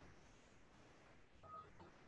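Near silence: faint room tone, with one brief, faint beep about a second and a half in.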